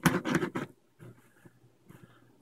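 A man's voice briefly muttering, trailing off after about half a second, then near silence: room tone.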